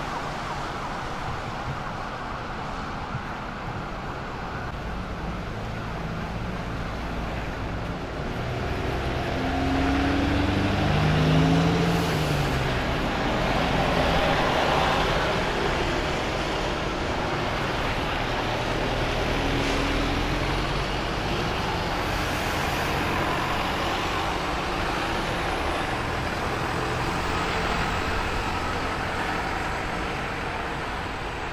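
City-street traffic with buses passing on a wet road: a steady wash of tyre and engine noise. A bus engine rises and falls in pitch as it pulls through, loudest about ten to fifteen seconds in.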